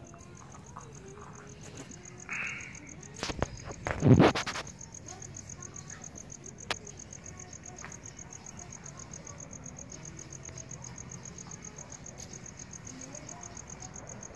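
Crickets chirping in a steady, high, pulsing trill. A short cluster of loud knocks and handling noise comes about three to four seconds in, and a single sharp click follows a couple of seconds later.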